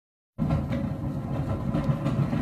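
Roller coaster train rumbling along its track, played through a TV's speakers, starting abruptly about half a second in.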